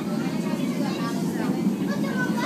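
Steady low rumble of the Channel Tunnel car-shuttle train running, heard inside an enclosed car-carrying wagon.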